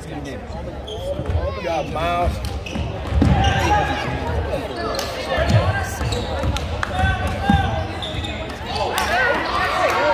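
Basketball dribbled on a hardwood gym floor, a series of bounces, under the steady chatter of spectators in the stands.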